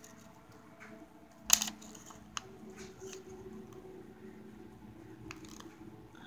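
Quiet handling of a bead-embroidered felt piece: one sharp click and rustle about a second and a half in, then a smaller tick a second later and a few faint ticks, over a faint steady hum.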